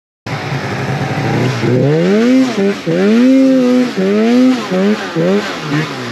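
Snowmobile engine running under load over soft snow, its pitch rising and falling over and over as the throttle is worked.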